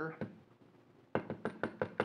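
Brass hair stacker tapped down on a hard surface in a quick run of sharp taps, about six or seven a second, starting about a second in: knocking the clump of deer hair inside so its tips even up.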